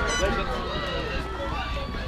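Crowd of spectators talking and calling out, many voices overlapping at once.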